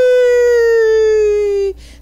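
A woman's voice holding one long drawn-out vowel at a fairly high pitch. The note sinks slowly and breaks off near the end.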